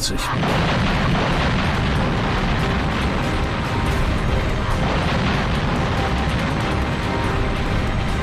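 Artillery barrage: a dense, continuous rumble of guns firing and shells bursting, loud and unbroken, with music faintly beneath.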